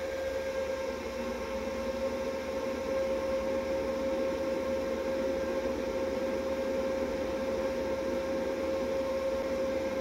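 EG4 6000XP hybrid solar inverter running: a steady hum on one constant tone over an even hiss. The owner puts the noise down to the sun coming out and the solar input rising, not to the AC input.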